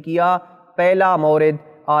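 A man speaking in two drawn-out, sing-song phrases with short pauses between, then resuming speech near the end.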